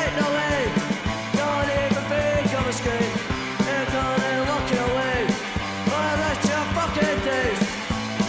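Punk rock song playing in a stretch without words: an electric guitar line bending in pitch over bass and drums keeping a steady beat.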